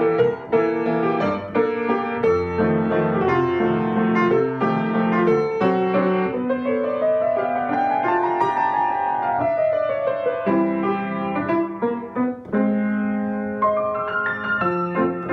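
Solo grand piano played: a melody over chords, with a quick run of notes climbing and falling back down about halfway through.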